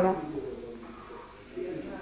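A pause in speech: a voice trails off at the start, then quiet room tone, and near the end a faint, short, low hum of a voice, like a murmured "mm".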